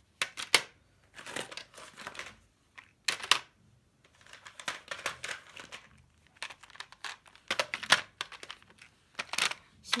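Hard plastic pen cases being handled and set into a clear plastic organizer drawer. There are sharp plastic clicks and clacks, several loud ones near the start, middle and end, with rustling of the packs in between.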